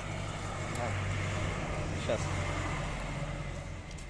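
A bus passing on the road, its engine a steady low hum that swells in the first second and slowly fades.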